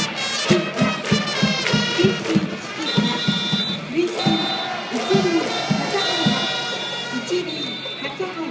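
A baseball cheering section's trumpets playing a player's fight song while a large crowd sings and chants along to a steady beat. The music eases off slightly near the end.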